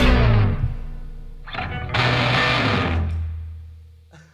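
Ending of an instrumental rock song on electric guitar: the full band cuts off and the sound dies away, then a short stab and a final chord is struck about two seconds in and left to ring, fading out over a low sustained note.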